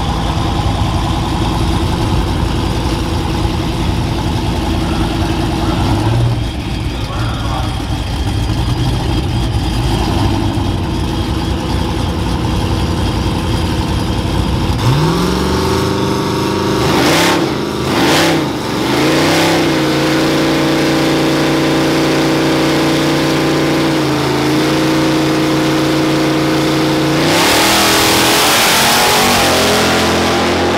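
Pickup V8s idling at a drag-strip start line. About halfway through, one engine revs up, blips twice, then holds steady raised revs against the foot brake before rising sharply and getting louder as the trucks launch near the end. The engine held on the brake is a 2011 Ram 1500 R/T's cammed, TorqStorm-supercharged 5.7 Hemi V8.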